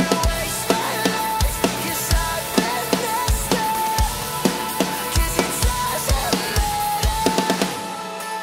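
Acoustic drum kit played with bundled rods along with a rock backing track: bass drum, snare and cymbals in a steady driving groove. The song stops right at the end.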